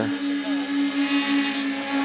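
A 450-size quadcopter with SunnySky brushless motors hovering low, its propellers giving a steady hum at one even pitch.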